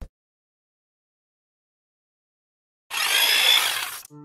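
Dead silence for nearly three seconds, then about a second before the end a loud hissing noise starts abruptly: an editing sound effect laid over the cut to a title graphic.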